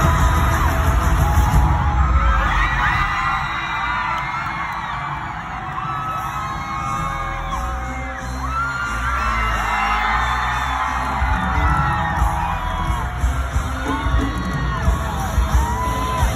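Stadium crowd screaming and cheering over loud, bass-heavy pop music from the concert sound system, many high shrieks rising and falling throughout.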